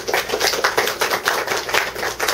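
Audience applauding after a poem: many hands clapping densely.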